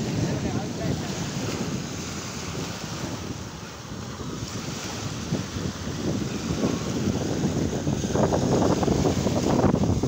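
Small waves breaking and washing up a sandy beach, with wind buffeting the microphone. The surf eases a few seconds in and grows louder again about eight seconds in.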